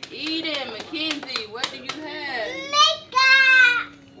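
Young children's excited voices and squeals, with a few sharp clicks in the first half and one long, high-pitched squeal about three seconds in.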